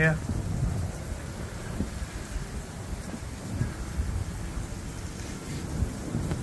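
Outdoor background noise: an uneven low rumble under a steady hiss.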